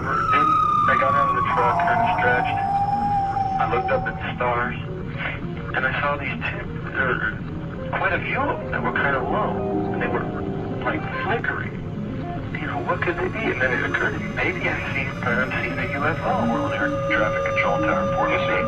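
Opening-credits soundtrack: music mixed with indistinct voices. A siren-like tone falls in pitch over the first few seconds, and held tones sustain near the end.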